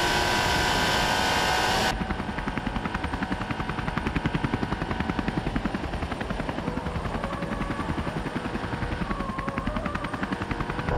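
About 2 s of the SEAT Leon CUPRA 280's turbocharged four-cylinder engine running hard under load, then an abrupt cut to the rapid, even chop of a camera helicopter's rotor. Late on, a car engine comes in faintly beneath the rotor.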